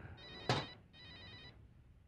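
Telephone ringing with a trilling electronic ring: two short bursts of about half a second each, with a brief gap between them. A short knock sounds about half a second in.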